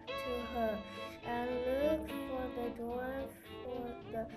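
A high voice singing a slow melody in held, wavering notes, over soft instrumental accompaniment.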